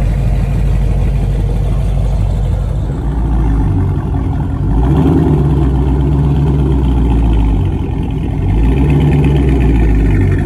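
Dodge Charger V8 exhaust running at idle, then revved up to a louder, held higher pitch about five seconds in and again near the end.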